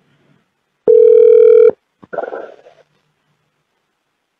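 A single steady telephone beep about a second long, the tone of the call being put through to a representative. A shorter, fainter sound follows about half a second later.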